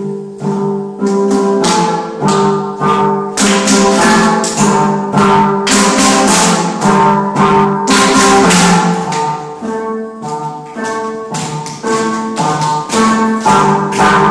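Steel pan played with mallets, a melody of ringing pitched notes, with hand claps and sharp percussive strikes over it, busiest in the middle.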